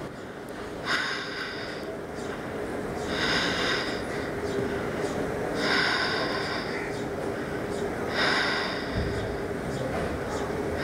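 A woman breathing slowly and audibly while holding a shoulder stand: about four long breaths, each about a second long, coming about two and a half seconds apart.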